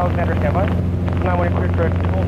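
Socata TB10 Tobago's four-cylinder Lycoming engine and propeller droning steadily in the climb, heard inside the cabin, with untranscribed voices talking over it.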